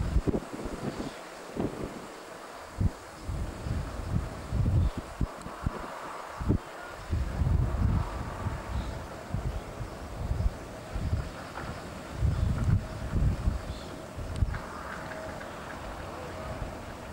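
Wind buffeting the microphone in irregular low rumbling gusts.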